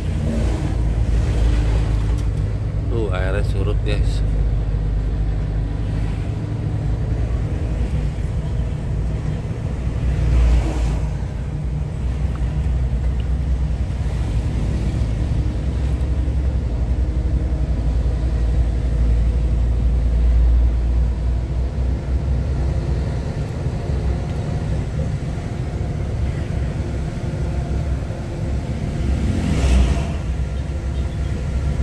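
Diesel engine of a FAW JH6 tractor truck running steadily while driving, heard from inside the cab, with road noise.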